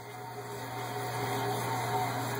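Homemade waste oil burner running, its burner fan and circulation fan blowing: a steady rushing noise with a constant low hum.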